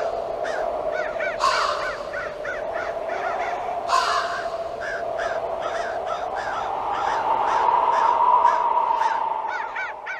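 Crows cawing over and over, with louder caws about a second and a half and four seconds in, over a steady eerie tone that rises slightly partway through.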